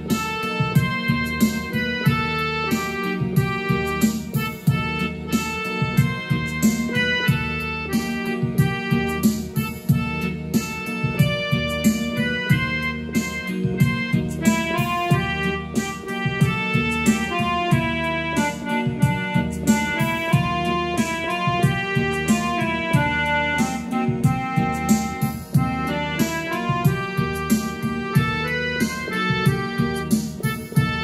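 Yamaha electronic keyboard playing a song melody in a piano-like voice, one note after another, over a steady beat and sustained low chords.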